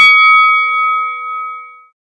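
A bell-like chime ringing out after a single strike, several clear tones at once fading away and dying out within about two seconds.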